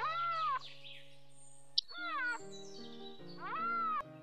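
Three drawn-out animal calls, each rising and then falling in pitch, laid over light background music with a simple stepping melody of held notes.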